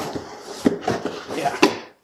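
Cardboard box and packing material being handled: steady rustling and scraping with a few sharp knocks, the loudest about one and a half seconds in.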